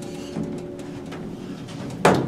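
Steady hum of a ThyssenDover traction elevator's machinery, heard from inside the car as a few level tones with a couple of faint ticks.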